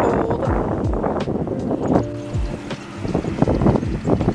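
Wind buffeting the microphone over small waves washing up the shore, with a short steady tone about two seconds in.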